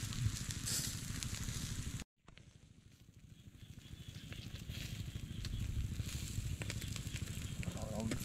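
Fish grilling on bamboo skewers over glowing charcoal, sizzling with small crackles from the embers. The sound breaks off suddenly about two seconds in, then fades back up.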